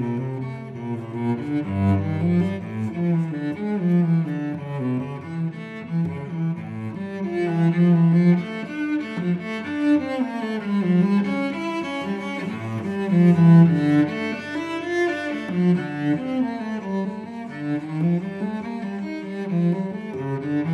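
Giovanni Viotti GV-790 cello played with the bow: a slow melodic line of sustained notes in the instrument's middle and low register.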